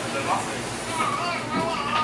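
Faint, indistinct voices, with no clear words.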